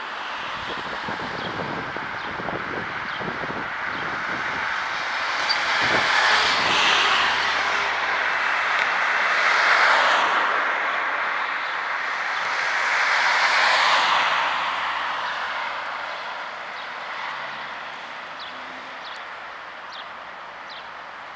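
Road traffic passing: tyre and engine noise of cars going by, swelling and fading three times, loudest about six, ten and fourteen seconds in, then dying away near the end.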